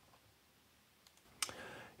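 Mostly near silence, with one short sharp click about one and a half seconds in and a faint rustle after it.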